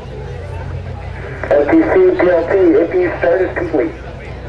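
A person's voice speaking loudly for about two seconds, starting about a second and a half in, over a steady low hum.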